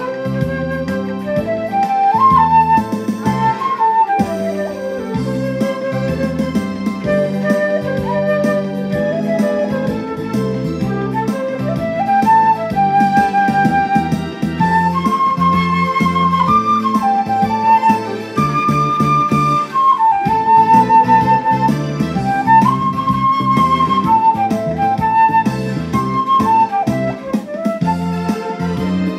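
Concert flute playing a slow, lyrical melody of held notes over a steady instrumental accompaniment.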